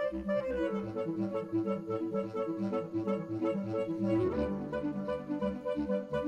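Bass clarinet music in a steady pulsing rhythm of repeated notes, about four a second. The pattern of notes changes about a second in and again just after four seconds.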